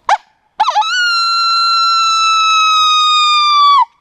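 Coyote howl: a short rising whoop, then a wavering start that settles into one long, steady, loud howl lasting about three seconds, dropping slightly in pitch as it cuts off.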